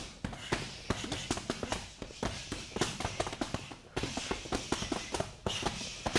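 A fast flurry of punches landing on leather boxing focus mitts: a quick, uneven string of sharp slaps, several a second.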